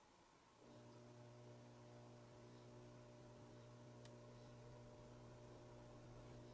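Near silence: a faint, steady electrical hum comes in a little over half a second in, with a single faint click about four seconds in.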